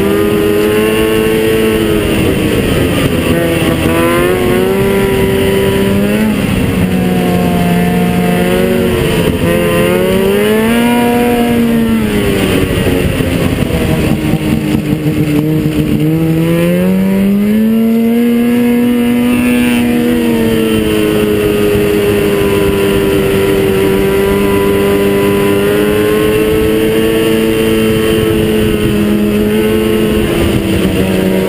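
Ski-Doo XP 600 SDI two-stroke twin snowmobile engine with aftermarket Dynoport and Barker exhaust parts, running under throttle. The revs rise and fall again and again, drop low about halfway through and climb back, then hold fairly steady near the end.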